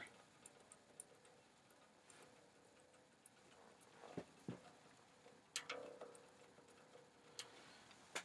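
Near silence, with a few faint, uneven clicks from fingers plucking the strings of an electric bass guitar that is not heard through an amplifier.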